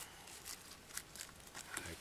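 Faint handling sounds of gloved hands working snare wire against a small tree: a handful of light, scattered clicks and crinkles.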